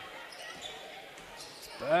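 Basketball game sound: steady crowd murmur in a hall, with a basketball being dribbled on the hardwood court.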